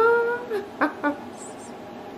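A woman laughing: one drawn-out high note that rises and holds for about half a second, then a few short laugh bursts within the first second.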